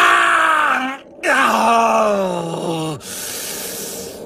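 A man's voice yawning loudly in two long, drawn-out vocal yawns that fall in pitch, the first lasting about a second and the second about two seconds, then a quieter steady hiss near the end.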